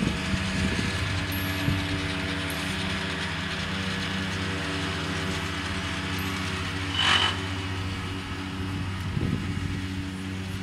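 A motor engine running steadily at an even pitch, with a brief sharp high sound about seven seconds in.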